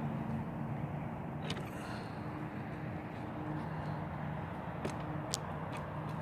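A car engine runs steadily at low road speed as a low, even hum, with a few faint ticks.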